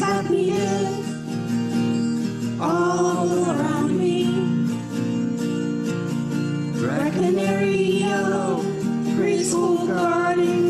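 A recorded song playing back: a singing voice over a steady guitar accompaniment. The voice comes in three sung phrases, at about three seconds, about seven seconds and near the end.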